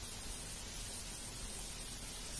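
Onions sautéing in butter in a frying pan, giving a steady, even sizzling hiss.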